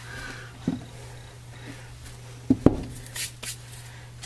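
A bar of soap being handled and set down on a paper-towel-covered counter: a faint knock, then two sharp knocks close together about halfway through, followed by a few short hissy bursts. A steady low hum sits underneath.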